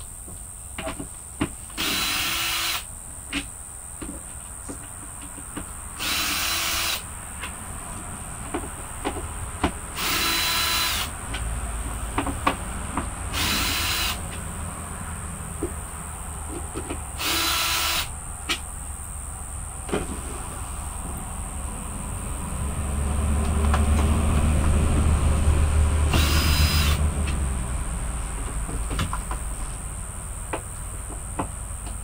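Power drill run in six short bursts of about a second each, with clicks and knocks of handling between them. A low rumble swells about two-thirds of the way through and is the loudest sound, over a steady high hiss.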